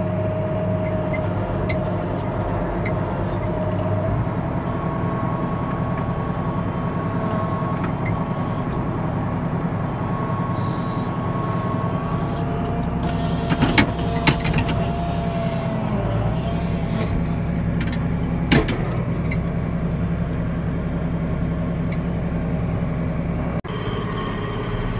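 Case IH Magnum tractor engine running steadily under load while it pulls a chisel plow through brush, heard from the cab. A few sharp knocks break through the engine sound, a cluster about 14 seconds in and one more about 18 seconds in.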